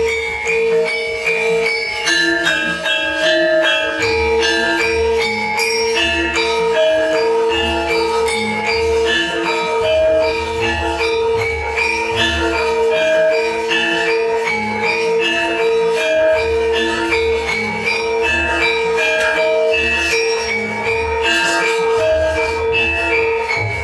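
Javanese gamelan music: bronze metallophones ring a quick, repeating melody over a long held tone and a regular low drum beat.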